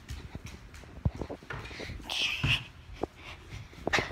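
A few thumps of bare feet jumping and landing on a wooden floor, with a short breathy hiss about two seconds in.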